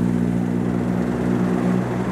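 A vehicle engine idling: a steady, low droning hum with no change in pitch.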